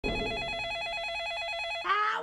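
Telephone ringing: a rapid, steady two-tone electronic warble that cuts off just before the end as a voice starts.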